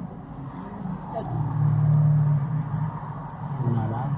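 A car's engine passing close through the intersection, swelling to its loudest about two seconds in and then fading, with brief low voices.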